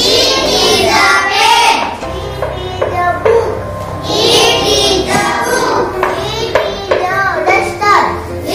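A young girl's voice reading sentences aloud in a sing-song chant, the same short phrase pattern coming round every couple of seconds.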